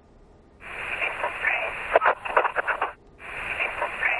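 A few words whispered by a woman on a voicemail left over a GTE Airfone, heard as a narrow, hissy telephone-line recording. The same short snippet is played twice in a row, the second time starting about two and a half seconds after the first.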